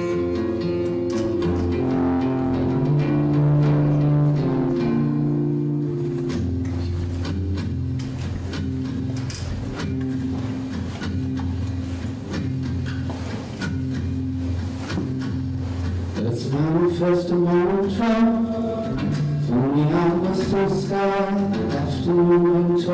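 Steel-string acoustic guitar playing an instrumental passage of held, ringing notes over a low bass line. About two thirds of the way through, a man's sung voice comes in over the guitar with long, gliding notes.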